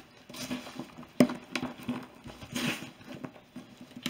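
Soft rubbing and handling noises from a vintage Louis Vuitton Epi leather handbag as it is moved and opened, with one sharp click about a second in.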